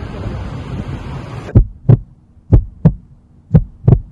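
A steady rushing noise cuts off about a third of the way in. It gives way to a heartbeat sound effect: three lub-dub double thumps, about a second apart.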